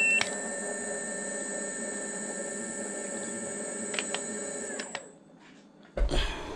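Segway Ninebot ES4-800 electric scooter's hub motor spinning the wheel off the ground at 22 mph, a steady high-pitched whine with lower hum, then winding down and stopping about five seconds in. This is the scooter running free at its raised top speed after a firmware speed flash. A short beep sounds right at the start.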